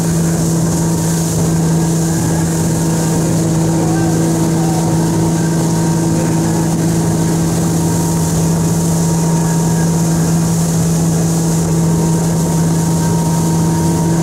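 Motorboat engine running at a steady towing speed, a constant even drone, over the rushing hiss of the churning wake and spray.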